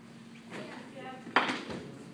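A short call from a voice, then a single loud, sharp smack about a second and a half in that dies away quickly.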